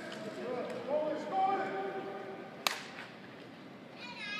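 People talking in the background, with one sharp smack about two and a half seconds in.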